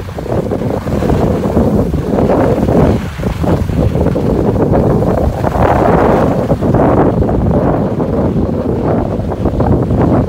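Wind buffeting the microphone of a phone carried by a downhill skier, mixed with the scrape of skis on packed snow; a loud, steady rush that swells and dips.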